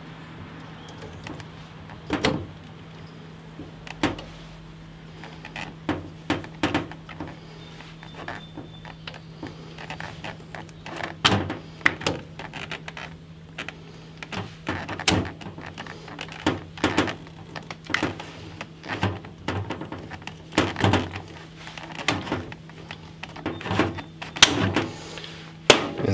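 Hand rivet gun being squeezed again and again to set a 1/8-inch steel blind rivet through an aluminum pack-frame stay: a string of sharp clicks that come closer together toward the end. The loudest snap, near the end, is the mandrel breaking as the rivet sets. A low steady hum runs underneath.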